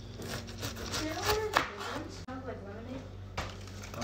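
Plastic knife cutting the crown off a whole pineapple on a cutting board, a few sharp cutting sounds, with voices talking in the background.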